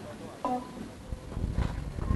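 A short voice call about half a second in, over open-air background noise, with low rumbling thumps building near the end.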